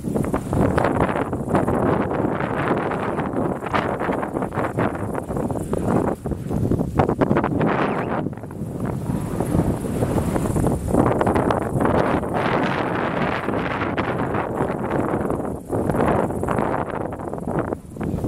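Wind blowing hard across the microphone, rising and falling in gusts.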